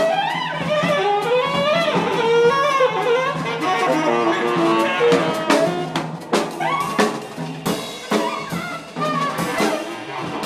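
Live jazz ensemble: saxophone lines running and gliding in improvisation over a drum kit with frequent sharp drum and cymbal hits.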